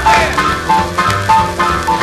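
A late-1940s instrumental R&B boogie combo of piano, trumpet, alto and tenor saxophones, bass and drums, played from a 78 rpm record. A short riff note repeats about every half second over a steady bass, with a sliding pitch smear at the start.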